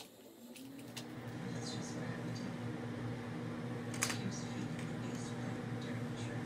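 A steady low electric hum, like a fan motor, fades in over the first second or two and holds. Two sharp clicks of plastic Lego bricks being handled come about one second and four seconds in.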